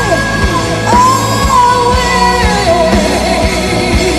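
Live metal band performance: a female lead vocalist singing over drums, bass and guitars, with a long held note starting about a second in.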